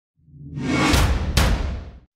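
Logo-reveal intro sting: a whoosh sound effect swelling up over a low rumble, with two sharp hits about half a second apart, then fading away.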